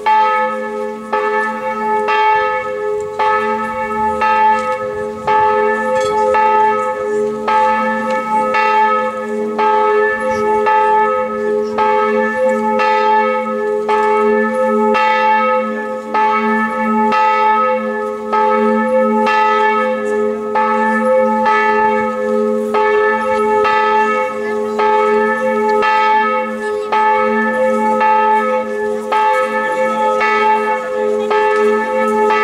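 Church bell ringing steadily, struck about once a second, each stroke's hum ringing on into the next.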